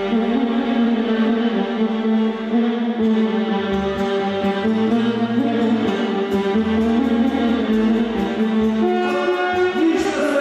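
Live band music with a violin among the players: a sustained, ornamented melody over accompaniment, with bass notes coming in about three seconds in.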